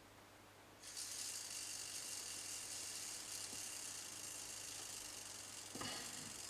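Small electric motor of a model locomotive running slowly on a low voltage (about 2.8 volts), a steady high-pitched whirring hiss that starts about a second in.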